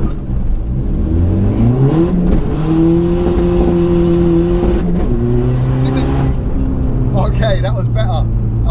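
Tuned 360 bhp 1.9 TDI diesel engine of a Mk4 VW Golf, heard from inside the cabin, revving hard through a standing-start 0-60 mph run. The pitch climbs steeply, holds level, then drops at gear changes about five and about six seconds in.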